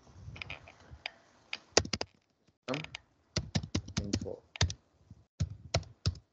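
Computer keyboard being typed on: irregular runs of quick key clicks with short pauses, as a command is entered.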